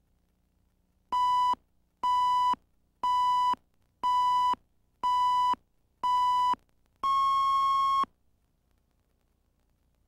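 Countdown beeps on a broadcast tape slate: six short, identical beeps one second apart, then a longer, slightly higher beep about seven seconds in.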